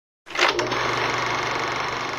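Logo intro sound effect: a sudden hit about a quarter second in, followed by a dense, steady noise that holds and then begins to fade.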